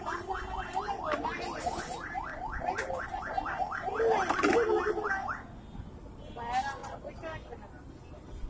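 A rapid, evenly repeated chirping, about five or six chirps a second, that stops about five seconds in, over background voices.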